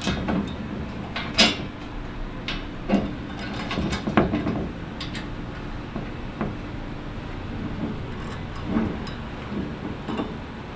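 Small metal clicks and clinks of a washer and nut being fitted by hand onto a bolt through a steel panel bracket, coming every second or so, over a steady low hum.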